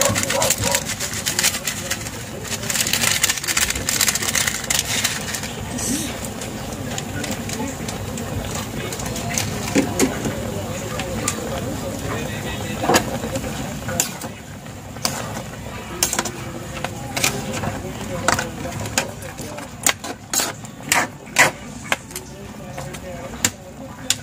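Pork adobo simmering in a metal pan, with a utensil clicking and knocking against the pan as the meat is stirred, the knocks coming thickest in the second half. Voices murmur in the background.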